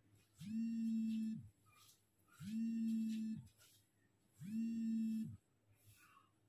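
Mobile phone buzzing with an incoming call: three one-second buzzes on one steady low pitch, about two seconds apart.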